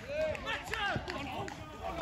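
Distant voices of footballers and spectators shouting and calling across an open pitch, fainter than close speech.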